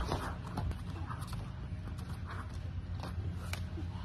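Light, scattered thuds of bare hands and feet landing on an inflatable air track mat during gymnastic walkovers, over a steady low background rumble.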